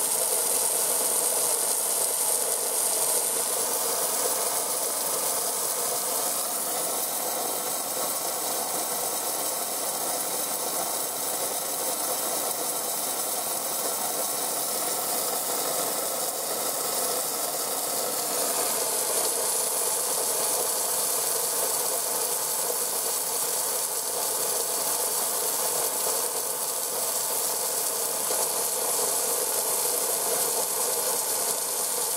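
Garden hose spraying water into a pond: a steady hiss with no breaks.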